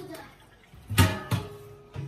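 Two sharp knocks about a second in, the second a third of a second after the first.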